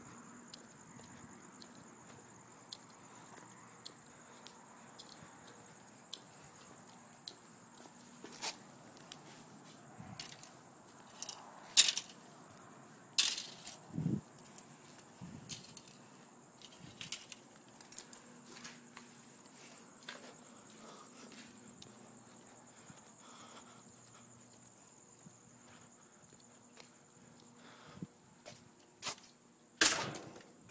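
Light knocks and small metallic clatters of loose computer debris being handled on hard ground, sparse at first, with a group of louder knocks about twelve to fifteen seconds in and another sharp knock near the end. A faint, steady high-pitched whine runs underneath.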